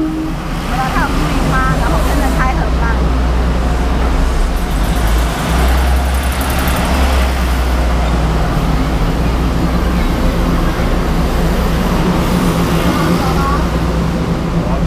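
Busy city street ambience: a steady traffic rumble with passers-by's voices, faint chatter in the first few seconds and again near the end.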